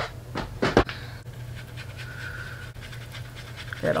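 A small dog panting, with a couple of sharp clicks of objects being handled about half a second in.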